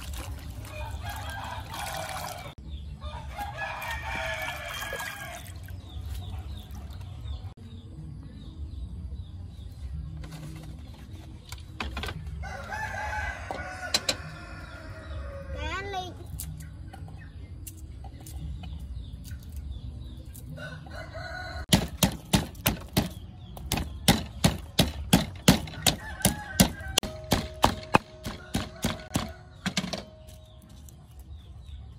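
A rooster crows several times in the first half. In the last eight seconds a wooden pestle strikes garlic and shallot cloves in a clay mortar in sharp, loud knocks, about two to three a second, loosening them for peeling.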